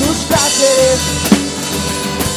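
A live band playing, with the drum kit's bass drum and snare loudest, under violin, acoustic guitar and a sung line.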